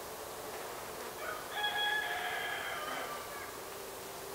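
A rooster crowing once, a single drawn-out call of about two seconds starting a little over a second in, over a faint steady background hum.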